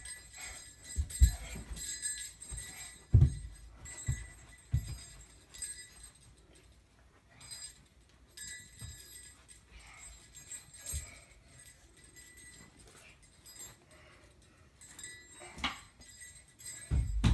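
A small child's feet thumping on a carpeted floor as he dances and runs about, several soft thumps mostly in the first few seconds, with faint jingling throughout.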